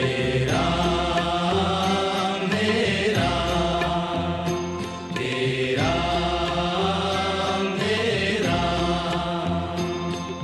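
Background devotional music, a Hindi bhajan track, its melodic phrase repeating about every two and a half seconds.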